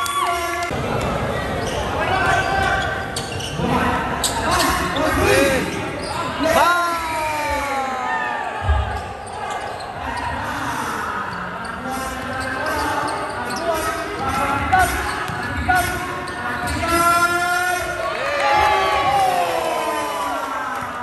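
Basketball being dribbled on a hardwood gym floor during a game, with players' and spectators' voices calling out over it. There is a heavy thud about nine seconds in.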